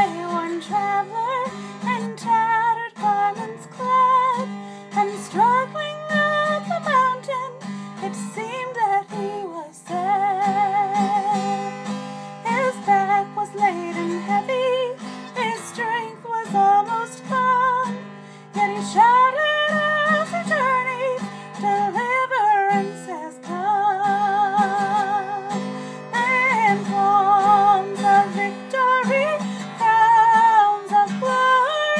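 A woman singing a gospel hymn, accompanying herself on a strummed acoustic guitar, with vibrato on her held notes.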